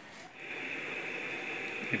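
Steady background hiss, starting about half a second in and running on.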